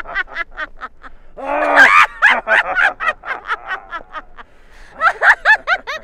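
A woman's theatrical villain laugh: a rapid string of 'ha-ha' bursts, with a louder drawn-out cackle about one and a half seconds in.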